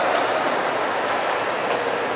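Spectators applauding, a steady wash of hand claps that echoes in the ice rink hall.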